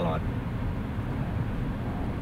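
Steady road and engine noise inside the cabin of a moving Honda car, a low even rumble.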